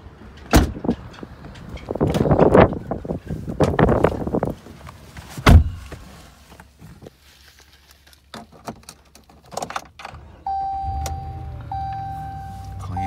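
Thumps and rustling of someone moving through a pickup's cab, with a heavy door slam about five and a half seconds in. Near the end the Ram 1500's engine starts and settles into a steady idle, with a steady electronic chime sounding over it.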